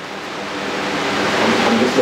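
A steady rushing noise that grows louder over the two seconds, with faint voices under it near the end.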